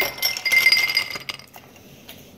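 Ice cubes poured from a cup into a tall glass shaker, clattering and clinking against the glass, which rings. The clatter is loudest at the start and dies away about a second and a half in.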